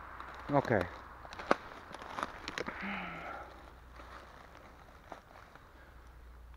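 Footsteps through dry leaf litter on a forest floor, with twigs snapping underfoot as sharp irregular clicks, the sharpest about a second and a half in, and a brief rustle of leaves around three seconds.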